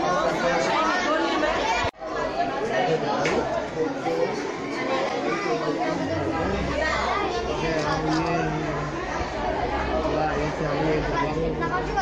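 Overlapping chatter of a group of children's voices echoing in a large hall, with no single speaker standing out. The sound cuts out for a split second about two seconds in, and a low steady hum joins about halfway through.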